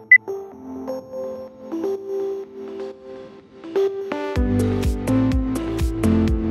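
A single high countdown beep right at the start, the last and higher-pitched one after the lower beeps of the count. Then soft electronic background music, joined about four seconds in by a steady beat with bass and drums.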